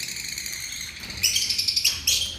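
Many lovebirds chirping together in a breeding aviary, a dense chatter of high, quick chirps that grows busier and louder in the second half.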